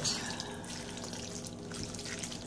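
Spatula stirring wet egg noodles and peas in a metal bowl, giving a soft, wet mixing sound with a few light clicks in the second half. A faint steady hum runs underneath.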